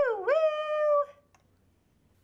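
A long "woo!" in a woman's voice, rising in pitch and then held steady, ending about a second in.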